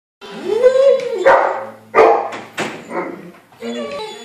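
German Shepherd dog vocalising: a long call rising and falling in pitch, then three sharp barks with room echo, about a second in, at two seconds and just past two and a half seconds.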